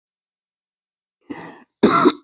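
A man clearing his throat: a soft rasp about a second and a quarter in, then a louder, sharper one near the end, after silence.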